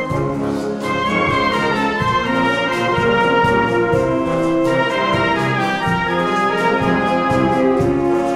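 Concert wind band of woodwinds, brass and percussion playing a beguine: held brass and woodwind chords over a steady, regular Latin dance beat.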